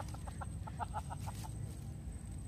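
A bird calling: a quick, even run of about a dozen short notes, roughly eight a second, lasting about a second and a half.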